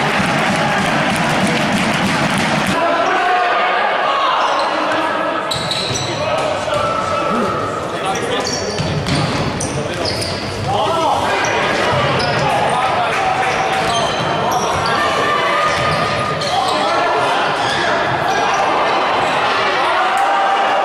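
Futsal match in a reverberant sports hall: the crowd cheers a goal for the first few seconds. Then play resumes with the ball being kicked and bouncing on the wooden court, shoes squeaking and players shouting.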